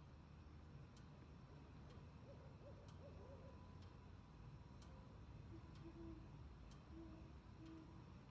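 Very quiet ambience: a low steady rumble with a few faint, wavering low calls in the middle and soft ticks about once a second.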